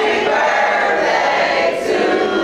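A group of voices singing together like a choir, held steady throughout.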